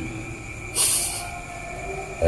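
A short, loud hiss of breath through the lips as a man smokes a cigarette, lasting about half a second and starting nearly a second in.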